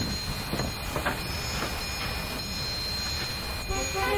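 A low, steady rumble with a few light, irregular knocks in the first half. Voices begin singing near the end.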